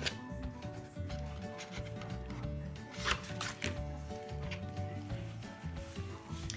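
Washi tape and paper being handled and rubbed down by hand, with a few short sharp clicks, the clearest about three seconds in, over soft background music.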